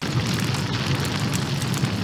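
A loud, steady rush of noise over a deep rumble, a fire- or explosion-like sound effect accompanying an animated countdown transition.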